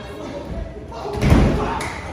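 Wrestler landing hard on the wrestling ring's mat: one heavy thud a little past halfway, with the ring's boom dying away over about half a second.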